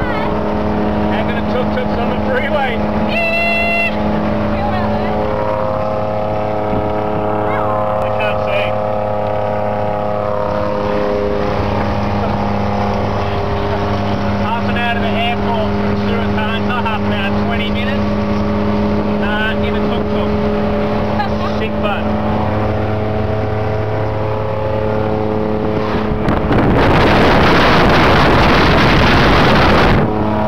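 Tuk tuk engine running steadily at speed, a constant drone heard from inside the open passenger cabin. About three and a half seconds before the end, a loud rush of wind on the microphone covers it.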